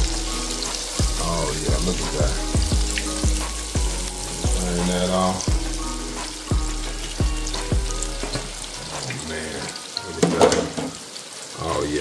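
Chicken tenders sizzling in the hot oil of an electric deep fryer during a flash fry to crisp them, a steady hiss. Background music with a steady beat plays under it and drops away near the end.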